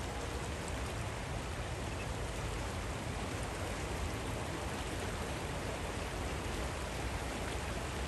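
Steady rushing of the Swat River flowing over its stony bed.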